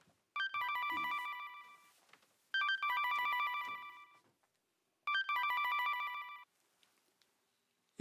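A mobile phone ringing with an electronic melody ringtone: the same short tune plays three times, each about a second and a half long, with short gaps between.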